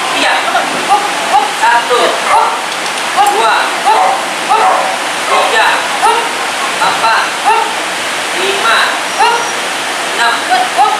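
Small pug yapping in short, high barks, about two a second, mixed with a handler's quick spoken commands, over a steady background hiss.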